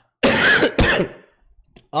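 A man coughing twice into his hand: two short coughs, the second one weaker.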